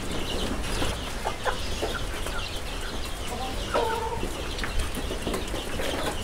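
Farmyard background: scattered short bird calls, with one slightly longer call about four seconds in, over a steady low rumble.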